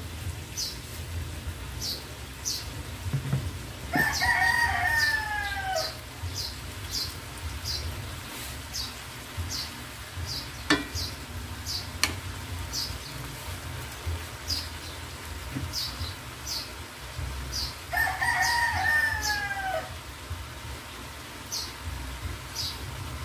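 A rooster crowing twice, each crow about two seconds long and falling in pitch at the end, over a steady low hum and short high chirps repeating about once a second.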